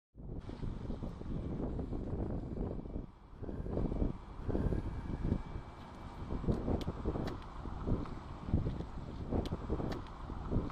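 Gusty wind rumbling on the microphone outdoors, mixed with city street traffic sound, with a brief drop a little after 3 s and a few sharp clicks in the second half.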